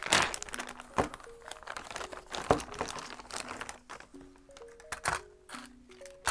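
Thin clear plastic bag crinkling with a few sharp crackles as it is handled and opened. Soft background music of short held notes plays throughout.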